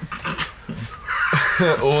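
A man laughing, a breathy laugh that starts about a second in and runs into speech.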